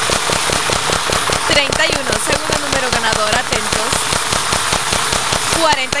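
Rapid, irregular clatter of plastic lottery balls tumbling in a drawing machine as the winning numbers are drawn. A wavering pitched sound, voice-like or melodic, runs over it.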